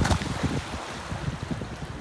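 Wind buffeting the microphone over a wash of water: small waves and splashing from someone paddling a bodyboard into the shallows of a beach.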